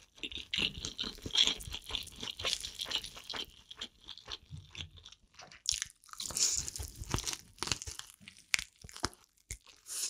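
Crunching and chewing of sauce-coated fried chicken, irregular crisp crackles of the fried coating. A fresh bite comes about six seconds in.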